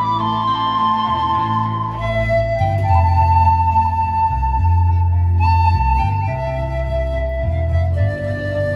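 Pan flute playing a slow melody of long held notes that step from pitch to pitch, over a deep bass accompaniment.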